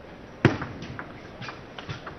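Table tennis ball being served and rallied. There is a sharp click about half a second in, the loudest sound, then a run of lighter clicks as the celluloid ball bounces on the table and is struck by the rackets.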